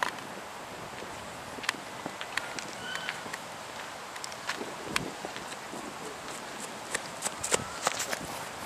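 Scattered footsteps on grass over a steady outdoor hiss, with a quicker cluster of steps near the end.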